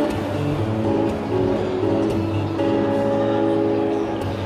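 Acoustic guitar playing held chords through a PA speaker, in a stretch of the song without singing.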